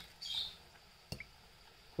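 Fingers pulling a cracked eggshell apart over a glass bowl, mostly quiet: a faint short squeak near the start and one light click of shell about a second in.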